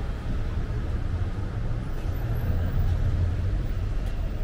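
A low, steady rumble of vehicle traffic, in outdoor street noise.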